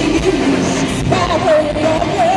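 Live rock band with a female lead vocalist: her voice sings with wide vibrato, moving up to a held higher note about a second in, over guitars, keyboards and drums.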